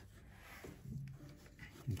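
Quiet pause with soft rustling as a hand brushes across the felt hammers of an upright piano's action, and a faint hummed 'mm' about a second in.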